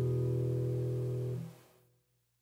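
Acoustic guitar's final chord ringing out as a song ends, then fading away quickly to silence about a second and a half in.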